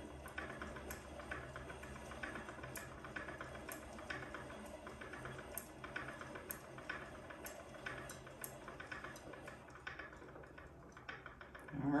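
Hand-cranked wooden yarn ball winder and umbrella swift turning as yarn is wound off the swift through a yarn counter: a steady ticking, one sharper click about every second among fainter clicks, thinning out near the end.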